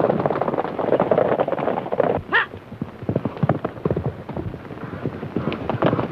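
Hoofbeats of several horses galloping, a dense, quick, irregular clatter, with a short high cry about two seconds in.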